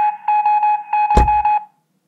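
An electronic alarm-like tone: one steady high pitch pulsing rapidly, with a dull thump about a second in; the tone cuts off suddenly near the end.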